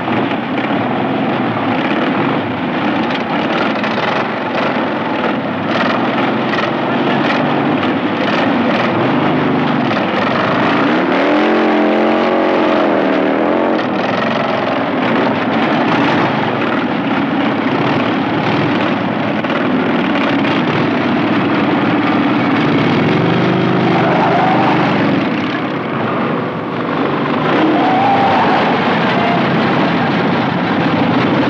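Several motorcycle engines started and running together as a group, loud and steady, with engines revved up and down a few times, most clearly about a third of the way in and again near the end.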